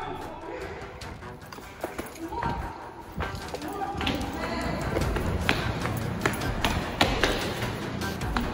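Footsteps and scattered thumps of people moving quickly, over music playing in the background and faint voices.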